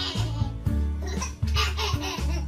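A baby laughing in repeated bursts over background music with steady low notes.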